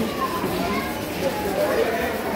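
Overlapping background voices of children and adults chattering, a steady babble with no single clear speaker.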